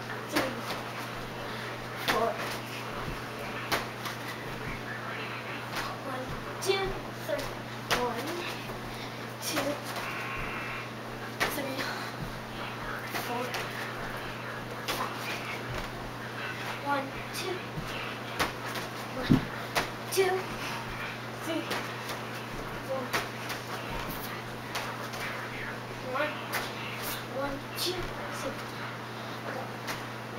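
Indistinct talking in a small room over a steady low hum, with scattered light thumps and knocks.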